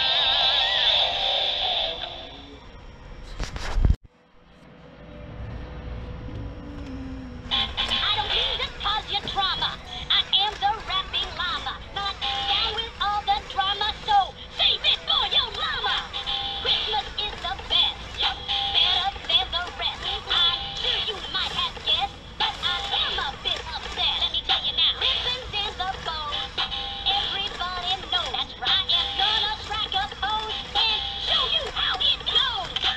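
Battery-powered singing plush animatronics playing their songs through small built-in speakers. In the first few seconds the snowman's guitar music fades out, and there is a sharp click about four seconds in. From about seven seconds in a dancing llama plush sings a novelty song.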